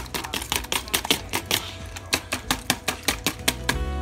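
Wire whisk beating raw eggs in a clear bowl, the wires clicking rapidly against the side at about six strokes a second. The clicking stops near the end.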